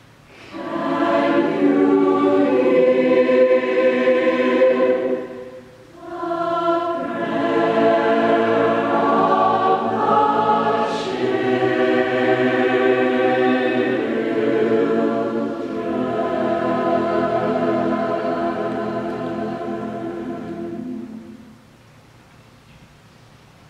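Mixed choir singing sustained chords in two long phrases, with a short break about six seconds in. The final chord tapers slightly and stops about a second before the end.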